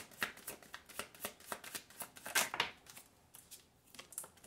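A deck of tarot cards being shuffled by hand: quick slapping strokes about four a second, dying down about three seconds in as the shuffling stops and a card is drawn.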